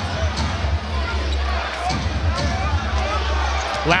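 A basketball being dribbled on a hardwood arena court, over a steady background of arena crowd noise.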